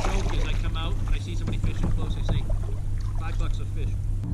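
Wind buffeting the microphone, giving a steady low rumble, under a man's faint speech.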